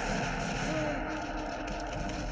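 A dense film soundtrack mix: music over a steady wash of noise, with faint voices gliding in pitch.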